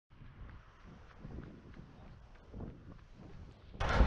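Faint wind buffeting the microphone, a low rumble that rises and falls in gusts.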